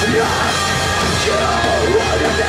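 Live rock band playing loud through a club PA, with electric guitars and drums and a vocalist singing into the microphone, recorded from the audience.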